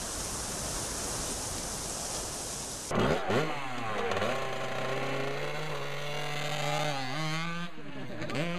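A steady rushing noise for about the first three seconds, then a Kawasaki two-stroke dirt bike engine revving up and down. It holds a high, steady rev and drops off near the end.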